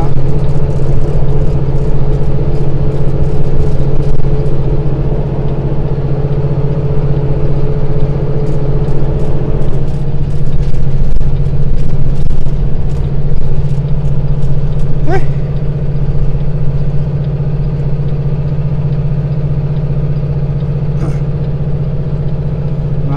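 Semi truck's diesel engine droning steadily, heard inside the cab, as the heavily loaded truck climbs a long grade. A steady higher tone in the drone drops out about halfway through, and a brief rising squeak is heard once.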